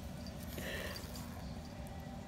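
Quiet rustling as a hand rubs a puppy's fur in a fleece dog bed, with one brief, slightly louder rustle about halfway through.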